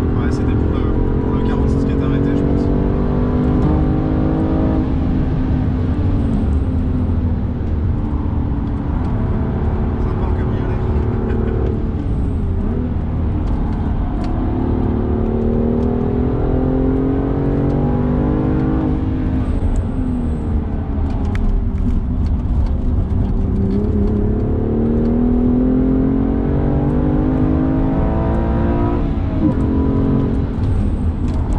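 BMW M2 CS's twin-turbo straight-six heard from inside the cabin while being driven hard on track. Its pitch climbs steadily and then drops, about four times over, as it is taken through the gears and the corners.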